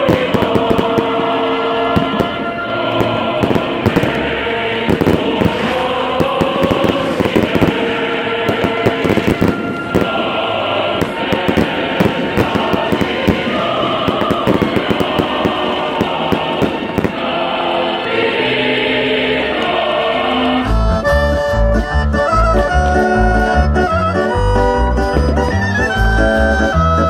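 Fireworks crackling and popping in rapid, dense bursts over a crowd singing and chanting. About 21 seconds in, the sound cuts abruptly to music: an accordion-led tune with a steady, pulsing bass beat.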